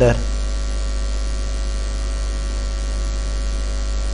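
Steady electrical mains hum on the recording: a constant low buzz with no other sound beside it.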